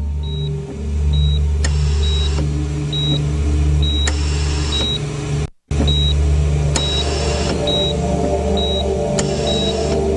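Film soundtrack: a steady low drone under a short high beep that repeats about one and a half times a second, like a hospital patient monitor, with a hiss that swells every two to three seconds. All sound cuts out for an instant about halfway through.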